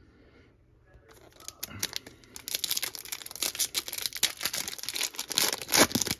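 Foil wrapper of a 2021 Donruss Optic football card pack crinkled and torn open by hand. The dense crackle starts about a second in, with a sharp rip just before the end.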